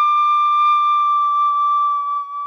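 Chrome-plated brass Lír D tin whistle holding one long, steady high D in the second octave. The breath eases off slightly near the end without the note breaking.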